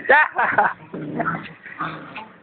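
Small dog whining and growling as it bites at a hand: a short high, wavering whine at the start, then a lower, rough growl about a second in.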